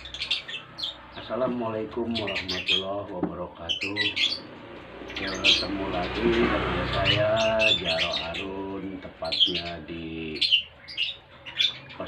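Small birds chirping, with short high calls repeated many times over several seconds, heard under a man's voice.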